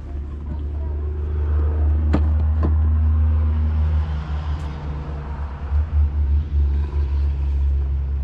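Loud low rumble that swells over the first two seconds and wavers unevenly in the second half. Two sharp clinks half a second apart come about two seconds in.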